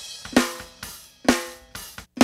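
Recorded snare drum track playing back, gated: two sharp snare hits about a second apart, each with a short ringing tone that dies away quickly.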